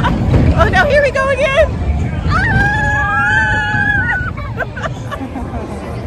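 A woman laughing in a quick run of bursts, then a high voice holding one long whoop for about two seconds, over the babble of a crowd.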